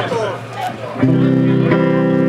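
A guitar chord struck about a second in, ringing on steadily.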